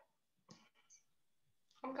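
Near silence on a video call, with two faint short clicks about half a second and a second in, then a voice starting to speak near the end.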